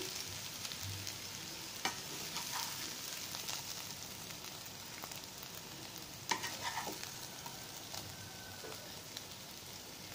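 Potato and shallot roast sizzling softly in a non-stick pan, a steady quiet hiss. A few light knocks of utensil and plate against the pan as the food is scooped out, about two seconds in and again around six seconds in.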